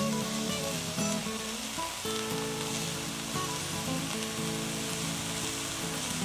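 Chopped onion and garlic sizzling in bacon fat and olive oil in a frying pan as they are stirred, sautéing until soft, with background music of held notes.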